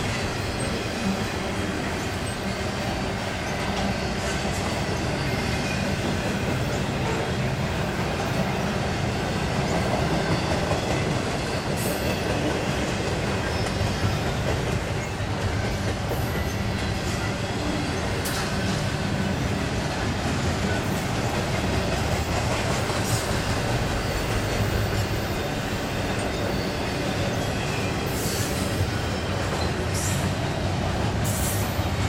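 Double-stack intermodal freight cars rolling past: a steady rumble and clatter of steel wheels on the rails, with a few brief high wheel squeals scattered through it.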